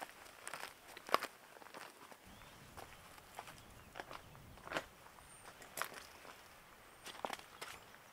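Footsteps on a trail of loose rock chips and dry leaves, about one step every half second to a second, louder in the first second and fainter afterwards.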